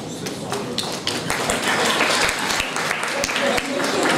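Audience applauding: many hands clapping at once in a hall.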